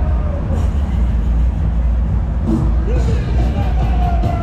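Fairground ambience: a loud, steady low rumble with music and voices over it, the music growing clearer about two-thirds of the way through.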